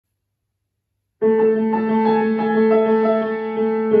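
Kawai grand piano starting about a second in: two low notes held steadily beneath a slow melody of changing higher notes.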